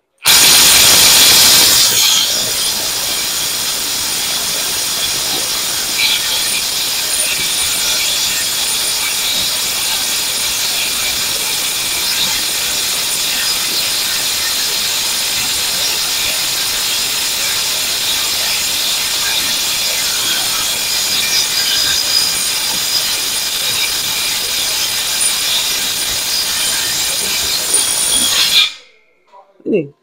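J-LD Tool cordless impact wrench hammering continuously in reverse at full power on a bolt tightened to 700 Nm, failing to break it loose. It is loudest for the first couple of seconds, then runs steadily until it stops shortly before the end.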